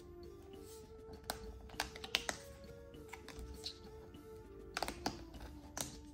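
Quiet background music with scattered light clicks and taps as fingers lift and press the cardboard flaps of a board book on a wooden table.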